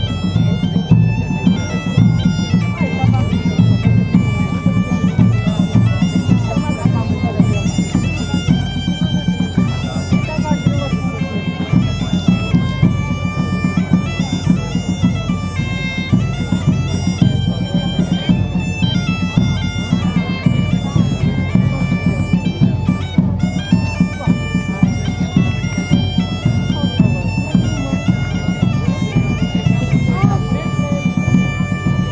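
Bagpipes playing a dance tune over a steady drone, with a large drum keeping a regular beat.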